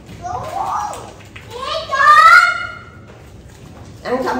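A young child's high-pitched voice calling out twice, a short call and then a longer, louder one whose pitch rises.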